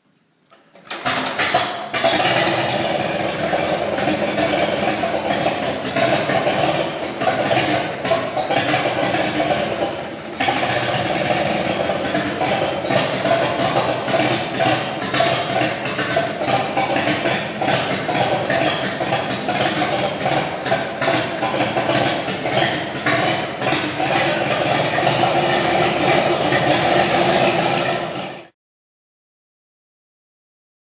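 A 1937 Farmall F20's four-cylinder engine is hand-cranked at the front and catches about a second in. It then runs loudly and steadily, with a brief dip around ten seconds in, and cuts off suddenly near the end.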